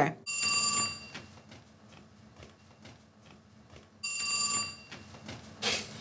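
A telephone ringing twice, two short rings about four seconds apart, as a call is placed to a house phone.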